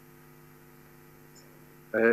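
Faint steady electrical hum made of several even low tones, with a man's voice beginning right at the end.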